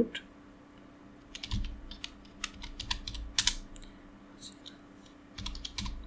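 Typing on a computer keyboard: a run of quick key clicks from about a second and a half in to past three and a half seconds, then a shorter burst near the end, over a faint steady hum.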